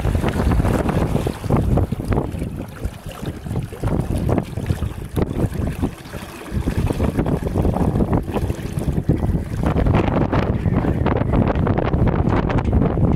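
Wind buffeting the microphone over water rushing and splashing along a small sailboat's hull while under sail. The level rises and falls unevenly, with a short lull about halfway through.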